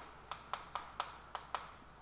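Chalk tapping on a blackboard while characters are written: a string of short sharp taps, about three or four a second.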